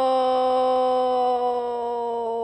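One long held musical note, rich in overtones, sinking slowly and slightly in pitch without a break.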